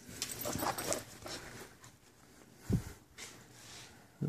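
Rustling handling noise from a phone camera being moved around for about the first second, then a single dull low thump a little before three seconds in.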